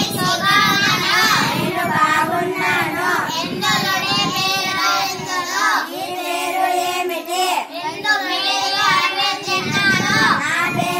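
A group of schoolchildren singing together in Malayalam.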